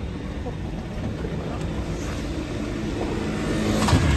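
Steady low rumble of street traffic, growing a little louder toward the end, with a sharp click just before the end.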